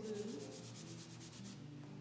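Soft pastel stick scrubbed back and forth on drawing paper in rapid, even scratchy strokes, laying down colour to mix blue and red. The strokes stop about a second and a half in.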